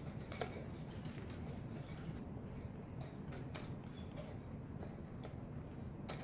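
Irregular sharp clicks every second or so, the first the loudest, over a low steady hum of a hall.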